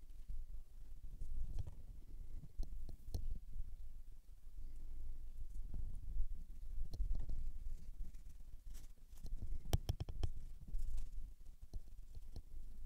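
Low rumble with scattered small clicks and taps from hands and painting tools at a worktable, and a quick run of clicks a little under ten seconds in.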